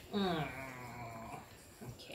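A dog's drawn-out low groan, about a second long and falling slightly in pitch.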